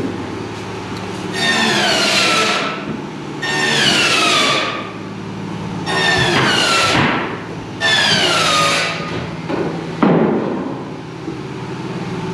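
Power tool work on a house-framing site: four bursts about two seconds apart, each a whine that falls in pitch over roughly a second, then a single loud knock about ten seconds in.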